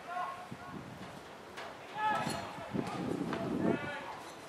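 Raised voices calling out across a football ground in two short bursts, about two seconds in and again near the end, with a couple of dull knocks between them.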